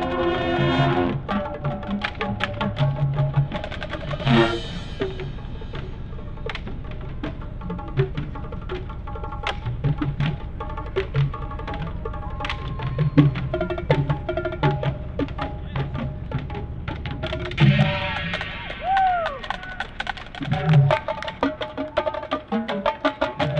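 High school marching band with its front-ensemble percussion playing. A full held chord opens the passage, then comes a sparser stretch of drum hits and sharp percussion strikes, with a brief swell about four seconds in. Fuller sustained playing returns near the end.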